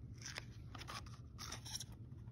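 A picture-book page being turned by hand: several brief, faint rustles and crinkles of paper.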